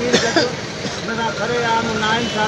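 Men's voices raised to a crowd in a street protest, with a loud shout in the first half second and talking after it.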